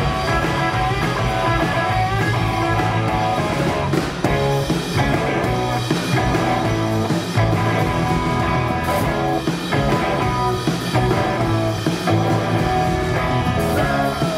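Live rock band playing loud electric guitar over a drum kit, heard from the audience.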